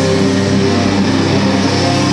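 A heavy metal band playing live, with distorted electric guitars holding a low, steady chord.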